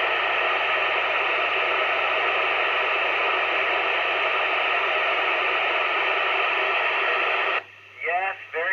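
Steady FM static hiss from a Yupiteru multi-band scanner receiver tuned to the ISS downlink on 145.800 MHz, with no signal on the channel between the space station's transmissions. The hiss cuts off suddenly near the end as the station's signal returns.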